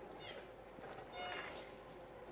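Faint, distant voice of a person speaking away from the microphone, in two short phrases about half a second and about a second in.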